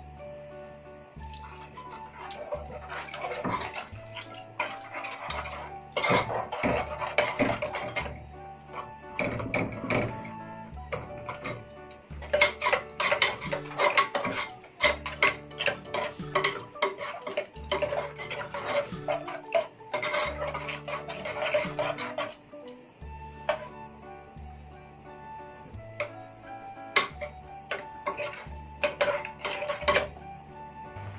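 A metal spoon scraping and clattering against a stainless steel pot while a thick flour-and-milk white sauce is stirred, in several spells of a few seconds each, over steady background music.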